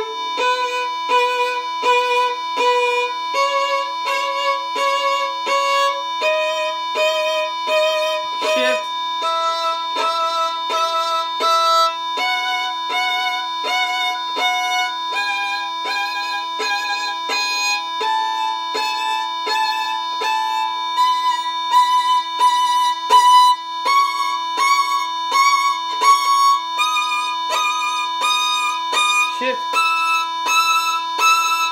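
Violin playing the E major scale slowly upward, each note bowed as four short stopped strokes before stepping to the next pitch, over a steady drone tone.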